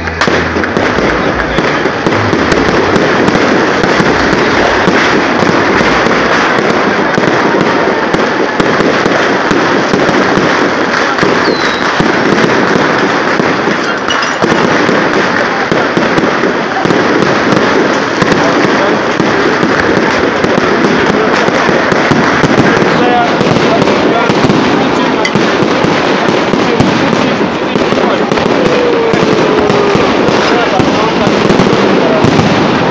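Fireworks display, shells bursting overhead in a dense, continuous crackle of many small bangs and pops, loud and unbroken throughout.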